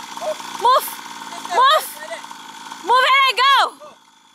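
Small petrol engine of a child's mini dirt bike running steadily at low throttle, with loud shouted calls over it; the engine sound drops away just before the end.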